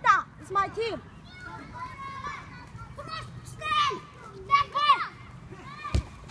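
Children shouting and calling out to each other during a soccer game, in several short bursts of high voices.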